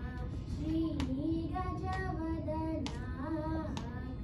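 A girl singing a Carnatic song into a microphone, holding long notes with wavering pitch ornaments. Two sharp hand slaps, about a second and about three seconds in, keep the tala.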